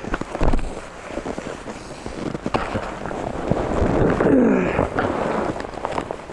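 Handling noise from a small action camera pressed against clothing: rubbing and scraping with scattered knocks, with a brief falling pitched sound a little past four seconds.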